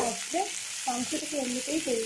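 Sliced onions frying in mustard oil in a metal kadai, sizzling steadily as they are stirred with a spatula. A pitched, wavering voice-like sound runs over the sizzle.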